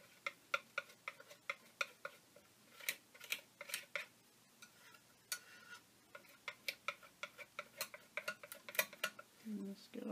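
Metal palette knife clicking and scraping against an art board as it spreads cold wax medium over torn mulberry paper, pressing the edges down and working out the bubbles. The clicks are light and irregular, a few a second.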